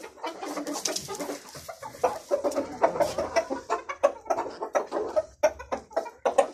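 Desi aseel chickens clucking in a run of short, quick notes, several a second, with sharp clicks mixed in.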